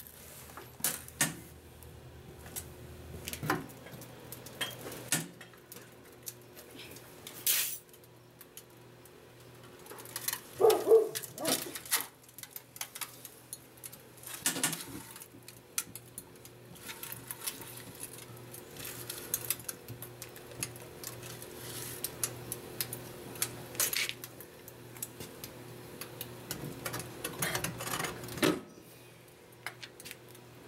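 Scattered metallic clinks and clatters of long steel tongs and parts being handled at an open electric heat-treat furnace, over a steady low hum.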